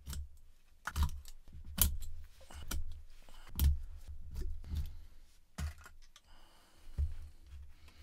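Quarter-inch Delrin plastic rods being pulled with pliers out of cured plaster of Paris in a smoke canister and dropped into a small dish: a string of sharp clicks and clatters, about one a second.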